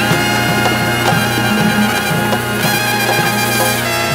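Afro-Cuban jazz big band playing live: brass and saxophones hold a long chord over regular percussion strokes.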